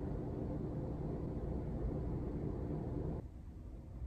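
A steady low rumbling background noise that cuts off suddenly a little after three seconds in, leaving a quieter room.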